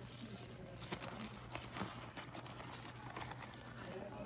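Light clicks and rustles of a dynamic microphone and its coiled cable being handled in a cardboard box. Under them runs a steady high-pitched pulsing whine and a low hum.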